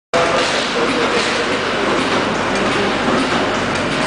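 Milk powder sachet packing machine running steadily: a continuous mechanical clatter with a faint hum under it.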